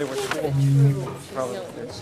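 People talking informally, with overlapping voices. About half a second in, one voice holds a low, steady hum for under half a second. That hum is the loudest sound here.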